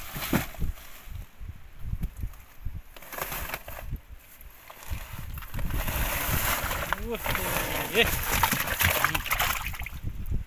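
Wet fish being tipped out of a woven plastic sack onto a fibreglass boat floor: scattered knocks at first, then from about halfway a continuous wet, sliding rush as the catch pours out and piles up.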